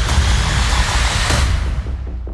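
Dramatic trailer music with a deep bass rumble under a dense rushing whoosh that thins out and cuts off just before the end.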